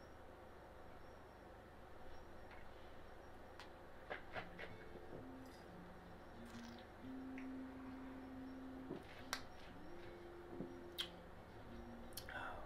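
Mostly quiet room with a few faint clicks and swallows as a man sips lager from a glass. From about four seconds in there is a faint low tune of slow held notes.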